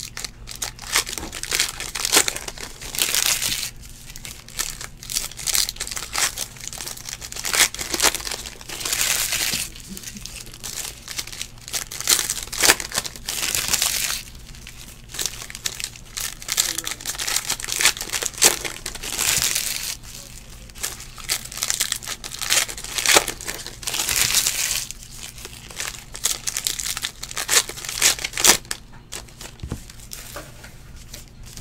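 Foil trading-card pack wrappers being torn open and crinkled by hand, in repeated irregular crackly bursts.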